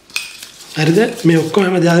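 A light clink right at the start, glass on a steel mixing bowl as chilli powder is tipped in. From under a second in, a man's voice speaks over it.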